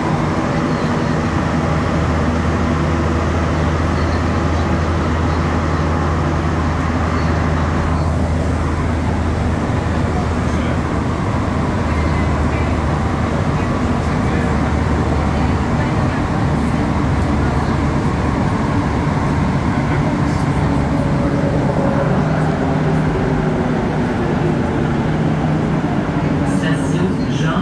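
A Montreal Metro Azur train running through a tunnel on rubber tyres, heard from inside the car as a steady rumble of running noise. A low hum under the rumble weakens a little past the middle.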